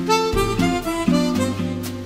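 Chromatic harmonica playing a jazz melody, a run of short notes changing pitch every fraction of a second, over a backing of bass and chords.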